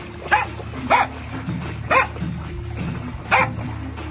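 A dog barking four times, in short single barks spread across the few seconds, over steady background music.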